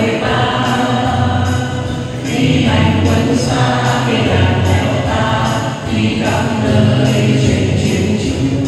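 A group of men and women singing a Vietnamese song together into microphones, with music playing along.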